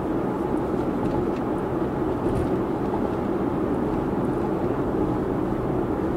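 Steady tyre and wind noise inside an electric car's cabin at highway speed, with no engine sound.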